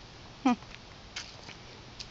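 A single short animal call about half a second in, falling steeply in pitch, followed by a couple of faint clicks.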